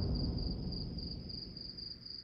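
Cricket chirping, a thin high note pulsing about three times a second, over a low noisy sound that fades away.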